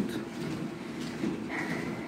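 Treadmill running steadily, a low mechanical hum of motor and belt under someone exercising on it, with a brief high tone about one and a half seconds in.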